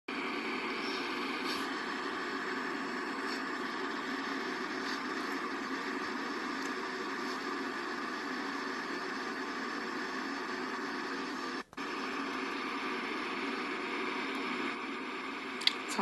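Steady hiss-like background noise carried on a phone live stream's audio, cutting out for a moment about three-quarters of the way through.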